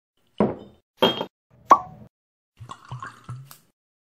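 Liquid plops: three sharp drops, each about half a second apart, followed by a quicker run of smaller splashes and drips.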